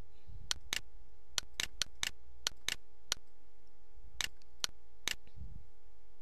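Computer mouse button clicking: a dozen or so sharp, irregular clicks, often in quick pairs, over a steady low hum.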